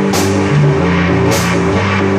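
Live rock band playing loud: held guitar and bass notes over drums, with a cymbal crash near the start and another just past halfway.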